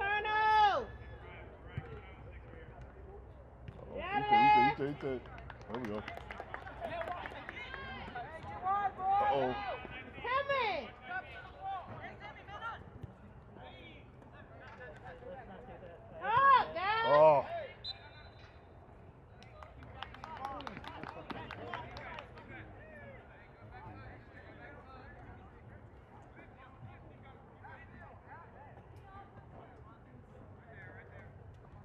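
Several short, loud shouts from people on and around a soccer field, each call bending up and down in pitch. The loudest come at the very start, about four seconds in and about seventeen seconds in, with quieter voices and chatter between them. The last several seconds are quieter.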